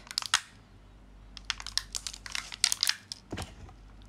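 A clear plastic clamshell food container being handled: a quick cluster of sharp clicks and crackles, then a longer run of them from about a second and a half in. A single soft low thump follows near the end.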